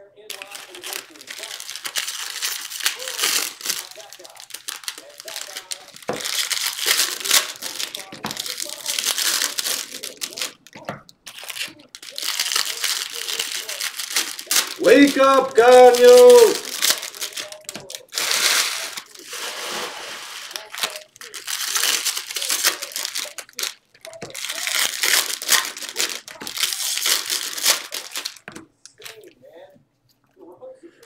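Foil trading-card pack wrappers being torn open and crinkled in repeated bursts of a few seconds each. A short voiced sound comes about halfway through, louder than the crinkling.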